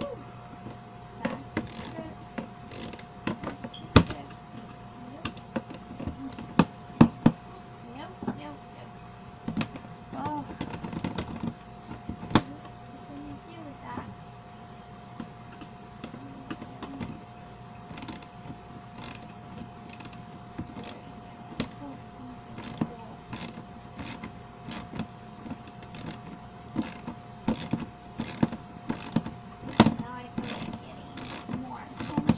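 Ratchet wrench clicking as a bolt through a plastic wagon bed is tightened. Scattered clicks and knocks come in the first half, then a regular run of clicks, a bit more than one a second, from about halfway on, over a faint steady hum.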